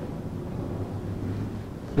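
Steady low hum under faint background noise, with no distinct event.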